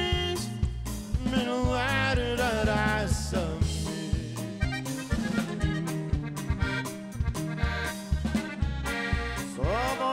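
Norteño band playing an instrumental break: button accordion carrying the melody over twelve-string guitar, electric bass and drums in a steady beat.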